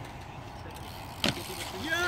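BMX bike rolling over skatepark concrete: a low rumble with one sharp click about a second and a quarter in. A voice starts rising just before the end.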